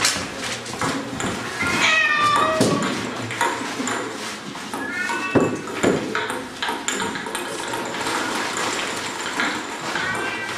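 Plastic sheeting of a moving puppet costume crinkling and crackling, with two short, high, wavering cries about two and five seconds in.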